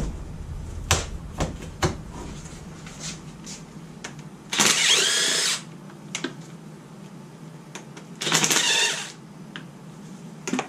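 Cordless power driver spinning out oil pan bolts on a 4.0 inline-six engine: two bursts of the motor whining, one of about a second near the middle and a shorter one near the end. A few sharp clicks and knocks in the first two seconds.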